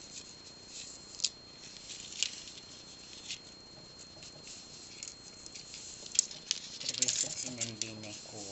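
Pearl beads clicking against one another and very thin metal wire rasping as it is pulled tight through them: scattered light clicks and ticks, busier near the end.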